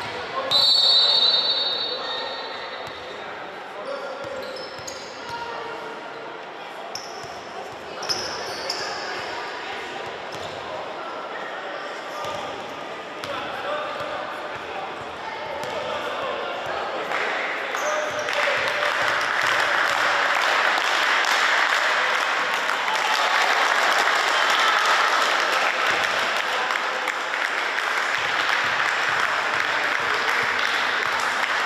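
Sports-hall sound during youth basketball free throws: a short referee's whistle about a second in, a basketball bouncing on the wooden floor, and the voices of players and spectators. From about halfway the crowd noise rises and stays up.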